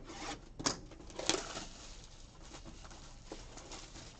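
Clear plastic shrink wrap being torn and peeled off a trading-card box: crinkling and tearing, loudest in the first second and a half, then quieter rustling as the wrap is pulled away.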